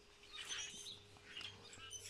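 Faint chirping of small birds, a few short calls scattered through the pause.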